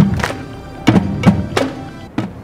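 Marching drumline drums struck in a slow, uneven run of loud hits, each with a low boom.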